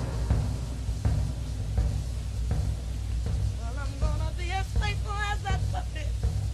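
Loose instrumental sound on a 1960s studio session tape between takes: a steady low rumble of instruments with scattered soft knocks. From a little past the middle, a wavering pitched line with strong vibrato runs for about two seconds.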